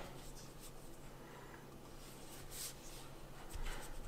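Faint rubbing and scratching of hands on the hard plastic body of a portable Bluetooth speaker as it is turned over, over quiet room tone.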